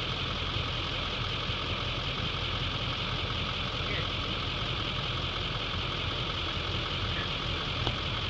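A pickup truck's engine idling steadily, a low even hum, with a steady high-pitched hiss over it.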